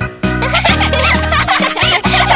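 Cartoon background music with a repeated bass line, and animated cat characters giggling over it from about half a second in.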